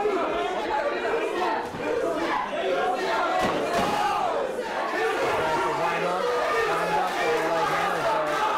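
Ringside crowd at an amateur boxing bout shouting and calling out, many voices overlapping.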